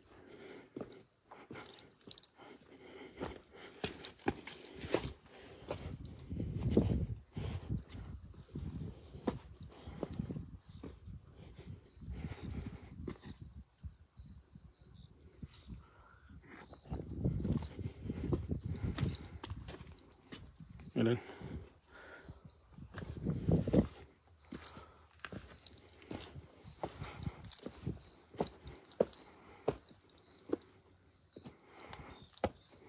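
A steady, high insect chirring runs throughout. Over it come scuffs, clicks and knocks of footsteps and hands on rough stone as someone climbs over rubble, with a few louder low, muffled bursts.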